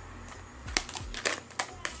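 Tarot cards being handled on a tabletop: a few light, separate clicks and taps of card stock as a card is picked from the spread and turned over.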